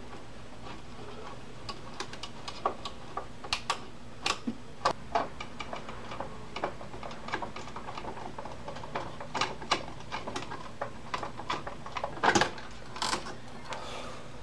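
Irregular plastic and metal clicks and taps as a CPU heat sink and fan is unfastened and pulled off the motherboard, with a louder cluster of clicks near the end as it comes free.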